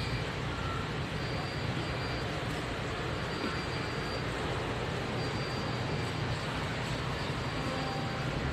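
Steady background noise inside a large warehouse store: an even rush with a constant low hum, typical of the building's ventilation.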